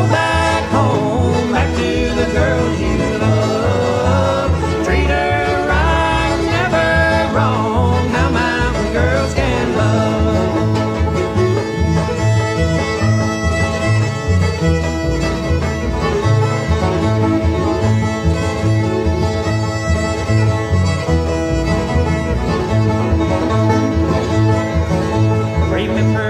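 Bluegrass band playing an instrumental break with no singing: a fiddle lead with banjo and guitar over a steady beat. The lead plays gliding notes in the first ten seconds, then settles into longer held notes.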